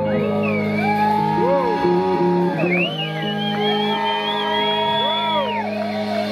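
Live rock band playing: electric guitar holding long notes that bend and waver in pitch, over electric bass and drums.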